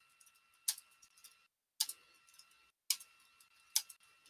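Computer keyboard keys clicking as a line of text is typed. Louder keystrokes come about once a second, with fainter clicks between them.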